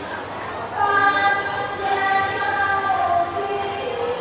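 A high voice holding long, steady notes that step down in pitch, over the murmur of a crowd.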